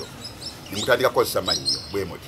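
Birds chirping in the background, with a man's voice coming in about a third of the way through.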